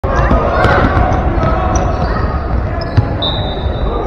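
Basketball bouncing on a hardwood gym floor during play, with spectators' voices echoing in the large hall. A sharp knock about three seconds in, and a high steady tone starts just after it and holds to the end.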